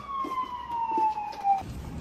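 Emergency vehicle siren, its wail sliding steadily down in pitch and cutting off about a second and a half in.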